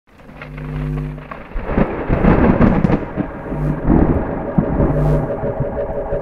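Thunder sound effect, a crash and rolling rumble that builds up about a second and a half in. Under it a low note sounds again every second and a half or so, and a held chord enters near the end.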